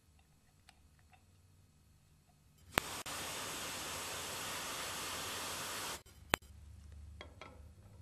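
Aerosol freeze spray hissing steadily for about three seconds, cooling a K-Jetronic cold-start zero-degree switch below freezing to test it. A sharp click sounds just as the spray starts, and another follows shortly after it stops.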